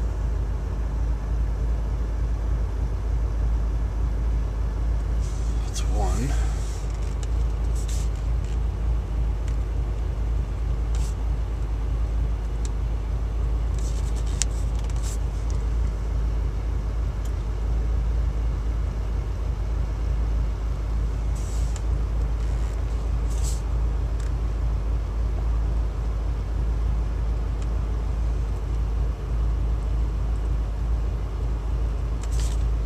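Steady low rumble of the Pontiac G8's Magnacharger-supercharged V8 idling, heard from inside the cabin, with a few brief faint high ticks.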